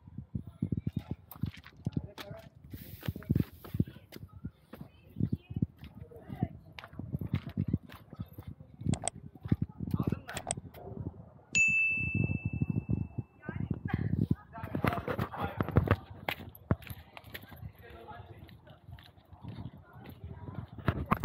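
Footsteps on stone and rubble with camera handling knocks, a steady run of irregular steps and thumps. A little past halfway, a steady high tone sounds for nearly two seconds.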